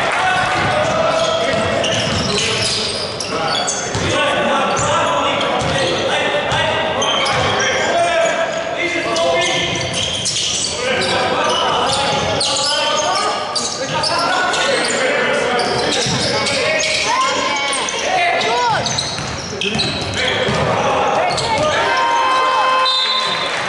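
Basketball game play in a large, echoing gym: the ball bouncing on the hardwood court, with players' and coaches' shouts and voices throughout and a few brief squeaks near the end.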